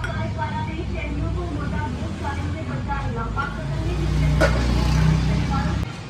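Low rumble of a passing motor vehicle that swells about four seconds in and cuts off just before the end, with a single sharp clink partway through.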